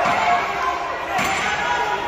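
Men's voices calling out in a large hall, with a sudden thud just past a second in.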